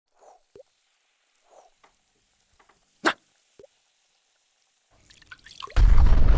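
Cartoon sound effects for an animated chemistry lab: a few sparse drips and plops and a sharp click about three seconds in, then a rising fizz that breaks into a loud explosion near the end.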